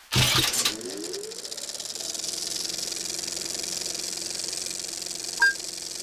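Film projector starting up: a loud rattle at the start, its motor whirring up in pitch, then running steadily with a fast clatter and hiss. A short beep from the countdown leader sounds near the end.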